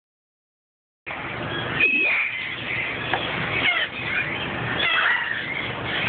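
Hyacinth macaw making short, pitch-bending calls over and over, with a few clicks as its beak works a plastic measuring cup. The sound starts about a second in.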